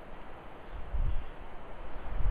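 A pause in speech filled by a steady background hiss of outdoor ambience, with a brief low rumble about a second in.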